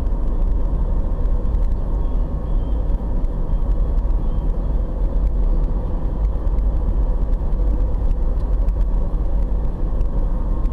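Car driving at highway speed, heard from inside the cabin: a steady, heavy low rumble of road and engine noise with a faint steady whine on top.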